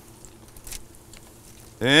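Chicken tenders deep-frying in hot oil in an electric countertop fryer: a low, steady bubbling with a few faint crackles and pops. A man's voice comes in near the end.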